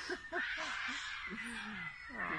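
A person laughing in short quick bursts, then a longer falling vocal sound near the end.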